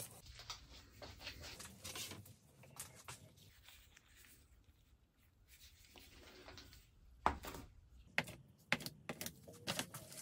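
Faint rustling and light clicking of dry woven carbon fiber fabric scraps being picked up and handled by gloved fingers on a cutting mat, with a few sharper clicks in the last three seconds.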